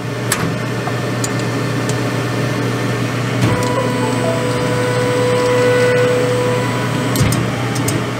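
Steady hum of the workshop's duct fan and diode laser engravers running, with a click near the start. About three and a half seconds in, a steady whine rises from the Ortur Laser Master 2 Pro as its laser head travels across the bed, stopping about three seconds later.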